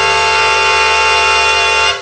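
Music: a brass-led swing band holding one long sustained chord, which cuts off near the end and rings away.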